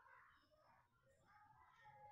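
Near silence: faint room tone with indistinct background sounds.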